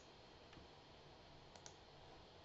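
Two quick computer mouse clicks a little past halfway, over near-silent room tone.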